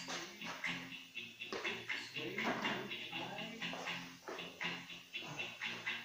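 A radio playing in the room: voices, with a steady musical bed underneath.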